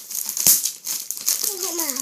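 Plastic packaging of a sticker starter pack crinkling as fingers pick at its sealed end, with a sharp tap about half a second in.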